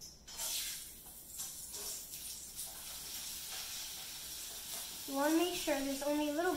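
Soft rustling of yarn being handled and tied by fingers, a faint hiss with a few light rustles; a woman starts speaking near the end.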